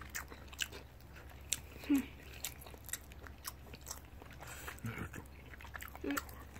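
Close-up eating sounds at a meal of udon and rice: chewing and mouth noises with scattered sharp clicks.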